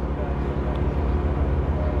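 Steady low rumble of outdoor background noise in a pause between spoken sentences, with faint steady tones above it.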